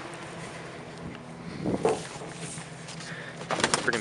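Flattened cardboard boxes being handled and pulled from a pickup bed: a few sharp crackles and knocks near the end, over a steady low hum. A short call rises and falls about halfway through.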